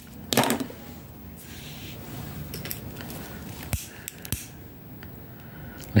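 Hands handling plastic heat-shrink tubing, a lead sinker and a lighter on a tabletop: a short rustle near the start, then soft fiddling noises with two sharp clicks about half a second apart past the middle.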